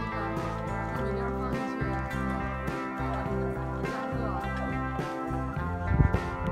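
Background music with acoustic guitar, its chords changing about once a second.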